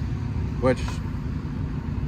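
A steady low background rumble, with one spoken word less than a second in.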